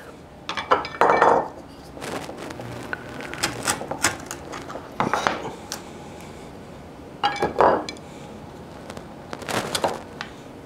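Wood chisel chopping and paring waste out of a dovetail socket in a hardwood board. Sharp clicks and knocks come in small groups a second or two apart, with short scrapes as chips break free.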